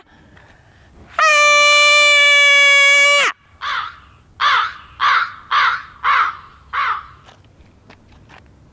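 A woman's loud, steady cry of "à!" held for about two seconds. It is followed by a crow cawing six times, about twice a second, used as a comic sound effect.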